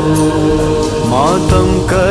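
Urdu devotional manqabat music. Voices hold sustained notes like a chorus drone, with a rising vocal glide about a second in and a soft percussive beat.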